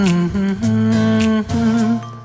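Wordless humming of a slow melody over soft backing music, the outro of a romantic Hindi song.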